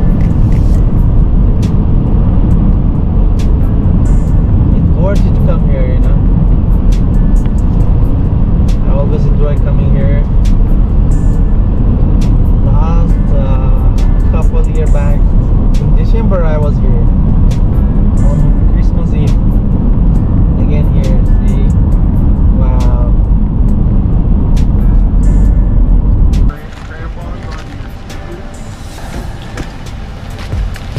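A car's road and engine noise heard from inside the cabin: a steady low rumble while driving on a highway, which cuts off suddenly near the end.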